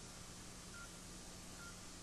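Near silence: a faint steady hiss and low hum, with a few very faint short high beeps about a second apart.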